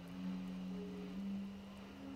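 Low, sustained synth drone from the film score, holding a few deep notes that step to new pitches about a second in, with a fainter higher note above.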